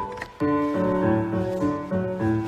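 Piano music for a ballet class exercise, lively notes and chords in a steady metre, with a short break just under half a second in.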